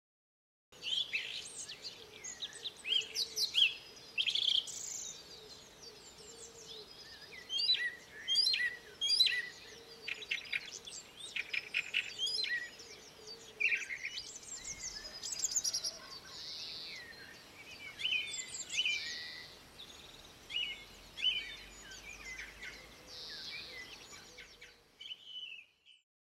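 Several songbirds singing and chirping together, with short trills and calls overlapping densely, starting about a second in and fading out near the end.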